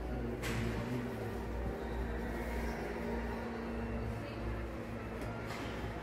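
Steady low hum and rumble of the enclosed train-car compartment, with murmured background voices and two brief rustling sounds, one about half a second in and one near the end.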